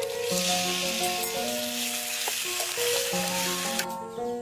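Black chicken pieces sizzling in hot oil in a wok as a metal ladle stirs them; the sizzle cuts off suddenly near the end. Background music with sustained notes plays underneath.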